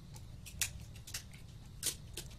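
Precision screwdriver clicking against the cover screws and metal lid of a Toshiba laptop hard drive as the screws are turned: three short sharp clicks, the loudest near the end, over a low steady hum.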